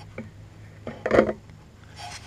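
A faint click, then a short rasping scrape about a second in: a plastic two-stroke oil bottle knocking against a plastic gas can spout as it is set upside down in it to drain.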